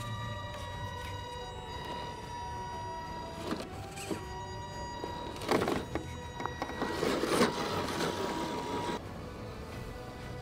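Electric motor and geartrain of a 1/10 scale FMS Toyota FJ40 RC crawler whining as it crawls over rock, with scrapes and knocks of the tires and chassis on the rock from about five and a half seconds in until about nine seconds. Background music plays throughout.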